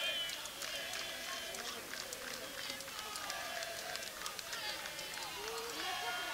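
Football players on the pitch shouting and calling to each other, with spectators' voices behind, faint and overlapping.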